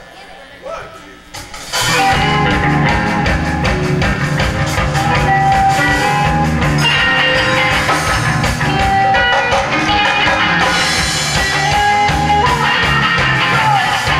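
A live rock band with electric guitars and a drum kit starts a song about two seconds in, after a quieter moment, then plays loud.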